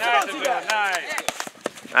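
Outdoor shouting from sideline spectators and players during a soccer match, with a few sharp knocks in the second half.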